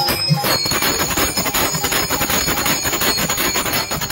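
Kirtan music: small hand cymbals clashing in a fast, even beat with ringing overtones, over the low thumps of a hand drum.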